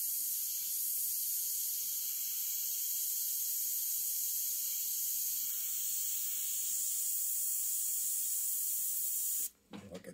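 Iwata CM-SB airbrush spraying: a steady high hiss of air and paint that cuts off suddenly near the end as the trigger is released.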